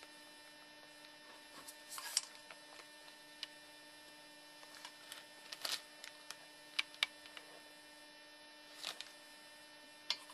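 Faint, steady electrical mains hum with a few short, light clicks scattered through it.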